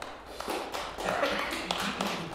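Footsteps and irregular light knocks of people moving about, with a voice now and then.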